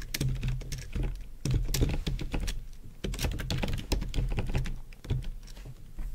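Typing on a computer keyboard: an uneven run of keystrokes with a few short pauses.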